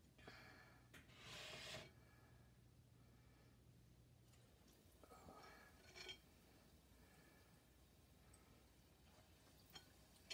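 Near silence: quiet room tone, with two faint short rushes of breathy noise, one about a second in and one about five seconds in.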